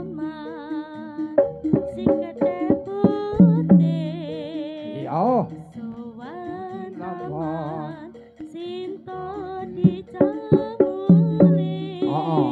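Live jaranan accompaniment: kendang drum strokes and struck gamelan tones under a wavering high melody line. The drum strokes come thick at first, thin out in the middle and pick up again near the end.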